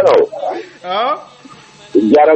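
A voice in short bursts with a buzzy, distorted edge: a loud syllable at the start, then a sliding, drawn-out sound about a second in.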